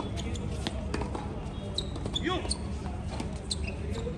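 Tennis balls being struck and bouncing on a court: a string of sharp, irregularly spaced knocks, with voices calling between them.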